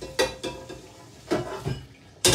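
Dishes and utensils knocking and clinking at a kitchen sink: three short knocks, the first ringing briefly.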